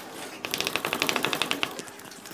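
Chalk writing on a chalkboard: a quick run of sharp chalk taps and scrapes, about ten a second, starting about half a second in. The strokes are characters being written and then underlined.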